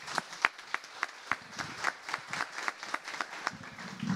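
Audience applauding, with individual sharp hand claps standing out over the general clapping.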